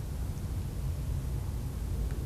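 Steady low rumble of room tone with a faint hiss, without distinct events.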